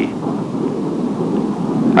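Jet engine of a T-33 trainer in flight: a steady low rumble with no distinct tones.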